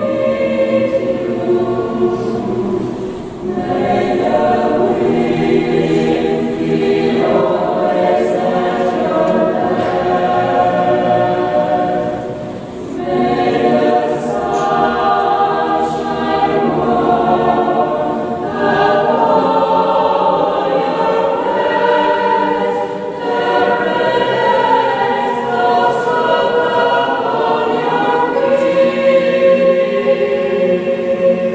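Mixed choir singing a sustained, slow choral piece in several parts, the sound dipping briefly at phrase breaks about three and a half and twelve and a half seconds in.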